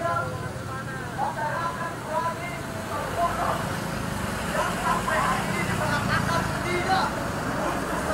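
Vehicle engines running at low speed close by as they pass through a crowd, with people talking over them.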